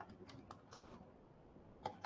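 Near silence with a few faint, short clicks of a pen tapping and writing on the board, and one slightly sharper tap near the end.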